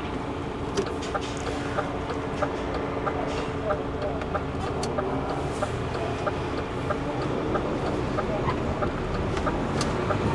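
Heavy goods vehicle's engine running steadily at low revs, heard from inside the cab, with a light, regular ticking of about two or three ticks a second.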